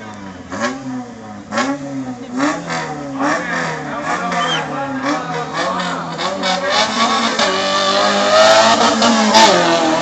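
A 4x4 jeep's engine revved over and over at the start line, its pitch rising and falling in quick blips. Near the end it climbs louder and higher as the jeep accelerates away on its autocross run.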